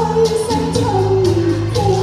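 Solo voice singing a slow melody into a microphone, holding notes and sliding between them, over a musical accompaniment with a steady beat about twice a second.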